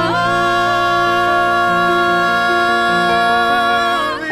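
Male singer holding one long, steady note without vibrato, sliding up slightly into it at the start, over the song's instrumental accompaniment. The held vowel is the word "no", sung with the mouth open so the o sounds close to an a, to colour the harmony.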